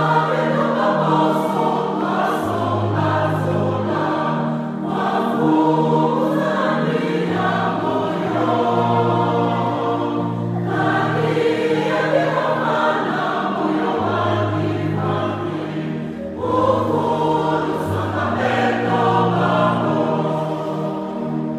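A choir singing a religious song in long, held phrases over sustained low bass notes.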